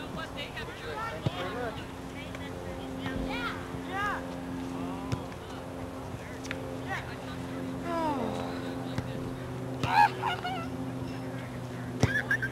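Children shouting and calling out across a playing field in short rising-and-falling cries, busiest near the end. A few sharp knocks sound among them over a steady low hum.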